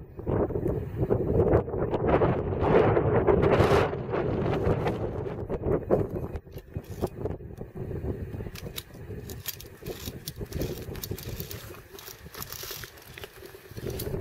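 Wind buffeting the camera microphone in gusts, loudest in the first four seconds, with scattered light clicks later on.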